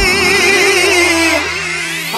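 Break in a Punjabi pop song: the drums and bass drop out, leaving a sustained wavering note with vibrato under a rising swept effect.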